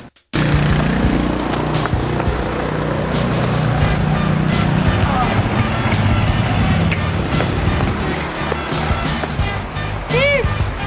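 Loud rock music with a steady, dense low end, starting suddenly after a brief silent gap near the start.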